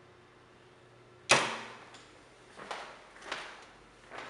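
A sharp clack about a second in, as of a fireplace's metal-framed glass doors being shut, with a short ringing decay. Two fainter knocks follow near the end.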